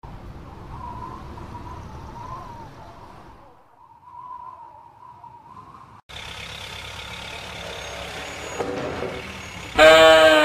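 Faint city traffic noise with a faint wavering tone. About six seconds in it cuts sharply to a steady, faint outdoor hiss.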